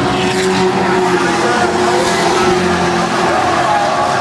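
Pack of late model stock cars racing around an oval, their V8 engines held at high revs and slowly rising and falling in pitch as they pass through the turn.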